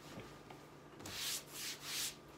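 A hand rubbing over a cloth desk pad: two short, hissy strokes in the second half.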